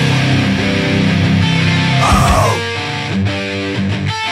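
Heavy metal song with distorted electric guitar chords over a full band; about two-thirds in the bass drops out, leaving the guitar more exposed.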